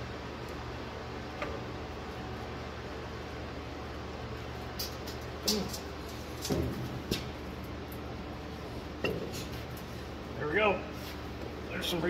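Scattered light metallic clinks and knocks as a rebuilt hydraulic lift assist cylinder is handled and fitted into its mount on a John Deere 8650 three-point hitch. A steady low hum runs underneath.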